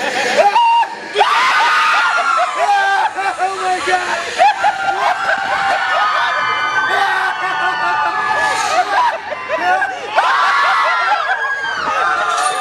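Ride passengers screaming and yelling during the drops of a free-fall drop-tower ride, several voices at once, with a short lull about a second in.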